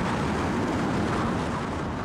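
Wind noise from a large tornado: a loud, steady rushing sound with a deep rumble underneath.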